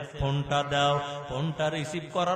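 A man's voice intoning a Bangla Islamic sermon in a drawn-out, sing-song chant, amplified through a microphone.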